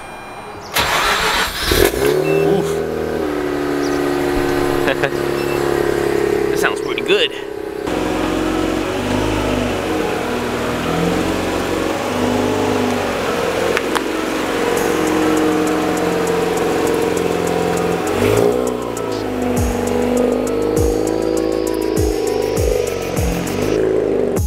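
Mazda RX-8's two-rotor Renesis rotary engine on a cold start: it catches about a second in and runs at a steady fast idle. Near the end the engine note rises several times as the car pulls away.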